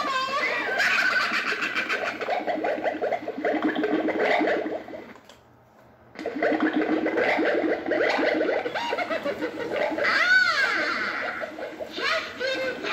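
Gemmy 5-foot Pink Sock Dress stirring-cauldron witch animatronic playing its recorded witch voice, a wavering cackling, laugh-like performance with a brief pause about five seconds in and a rising-and-falling wail near the end.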